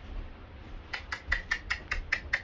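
Quick run of tongue clicks, about five a second, starting about a second in: a handler clucking to urge a horse forward into a trailer.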